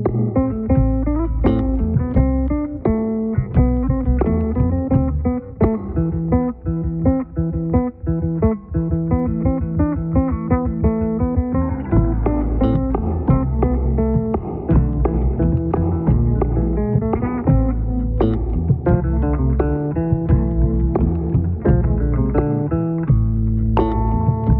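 Solo electric bass guitar music in which every part is played on bass: a plucked low bass line under higher chord and melody notes. A stretch of quick, evenly repeated low notes runs through the middle.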